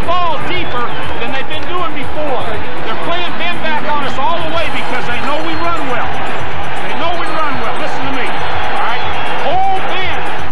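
Men's shouting voices over crowd noise, with background music underneath.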